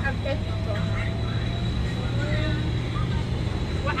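Steady low rumble of a vehicle's engine and road noise heard from inside the passenger cabin, with a faint voice in the background.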